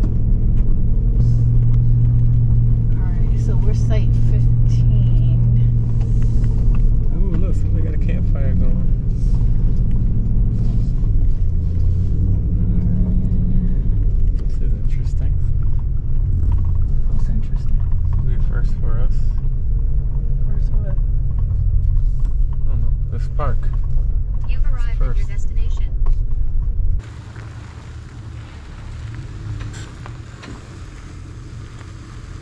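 Vehicle engine droning under load on an uphill climb, heard from inside the cab over steady road rumble; its note steps lower about seven seconds in and again about halfway through. About 27 seconds in it cuts to a much quieter outdoor hiss.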